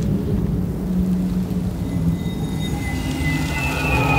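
Film soundtrack: a low, dark rumbling drone with sustained low notes. Thin high tones come in about two seconds in, a higher one joining near the end.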